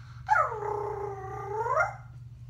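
A girl howling like a dog: one long 'awoo', about a second and a half, that drops in pitch and climbs again at the end. She is doing it to coax a sheltie puppy into howling along.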